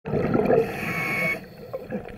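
Scuba regulator exhaust: a diver's exhaled bubbles gurgle out loudly with a thin whistle over them, then stop about a second and a half in, leaving faint underwater background.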